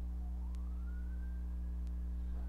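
A faint distant siren wailing, its pitch rising slowly and then falling again, over a steady low hum.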